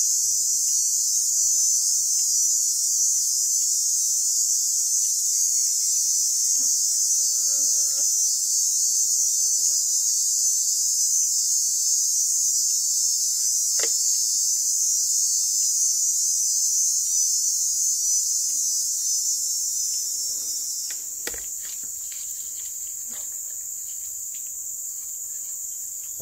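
Dense insect chorus: a steady, high-pitched buzz that becomes quieter about 21 seconds in. A couple of faint clicks are heard over it.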